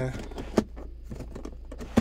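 Sliding centre armrest of a Mercedes A-Class being worked by hand: two sharp plastic clicks, one about half a second in and one at the end, with light knocks between, over a steady low hum.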